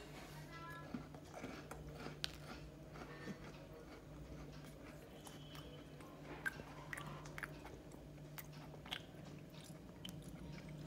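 A chocolate chip cookie being bitten and chewed close to the microphone: faint, scattered crisp crunches over a low steady hum.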